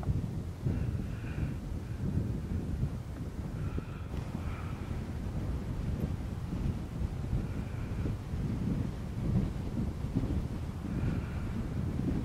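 Wind buffeting the microphone: a rough low rumble that rises and falls in gusts.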